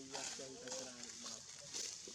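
Faint, indistinct voices of people talking in the background, over a steady high-pitched hiss.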